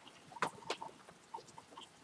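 A few faint, short clicks and ticks over low background noise, the two clearest about half a second in and a little after.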